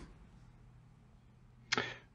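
Near silence: a pause between speakers with a faint low hum, broken near the end by a brief breath or first sound from the next speaker.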